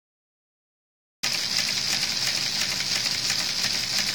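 Silence for about the first second, then a steady hiss with a faint low hum underneath: the recording's background noise, unchanging and without any clicks or mechanical rhythm.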